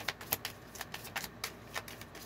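Tarot cards being shuffled by hand: a quick, irregular run of light clicks and flicks as the cards slide against each other.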